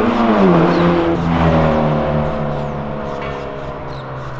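A car's engine revving hard as it drives past, its note dropping in pitch early on as it goes by, then holding lower and fading away.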